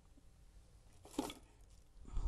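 Near silence with one brief handling noise about a second in, as things are moved while rummaging under a table for a water bottle.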